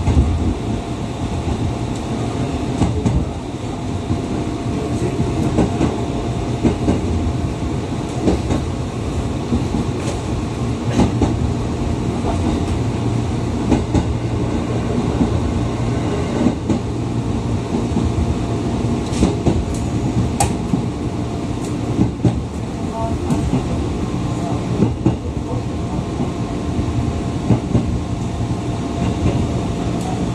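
Inside the cabin of a JR 211 series electric train pulling out of a station and running along the line: a steady rumble of wheels on rail and running gear, with a faint steady hum and scattered short clicks from the track.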